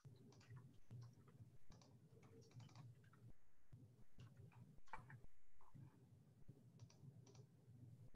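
Faint computer keyboard and mouse clicks, scattered and irregular, over a low steady hum.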